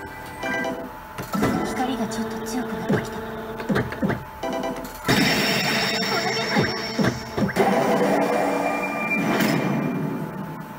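Pachislot machine audio: anime-style game music with character voice lines and effect sounds. From about five seconds in a louder, fuller effect sound comes in.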